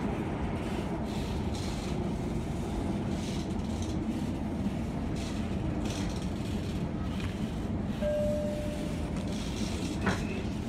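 Tyne and Wear Metro train running, heard from inside the carriage as a steady rumble of wheels and motors. About eight seconds in, a short steady tone sounds briefly over the rumble.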